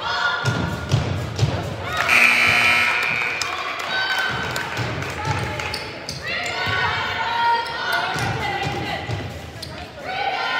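Basketball bouncing on a gym's hardwood floor, several bounces in the first second and a half and more scattered later, with voices calling out in the echoing gym.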